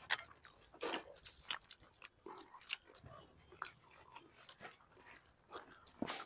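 Faint eating sounds: scattered soft lip smacks and chewing as rice and curry are eaten by hand.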